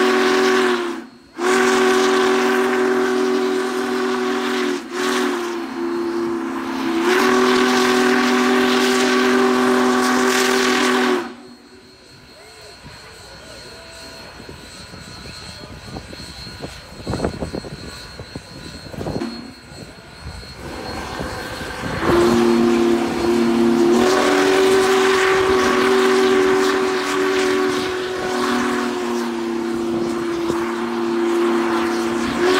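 Union Pacific steam locomotive's multi-note chime whistle blowing long, loud blasts. It breaks briefly about a second in and again near five seconds, then cuts off about eleven seconds in. After about ten seconds of quieter crowd and outdoor sound, it blows again from about 22 seconds on.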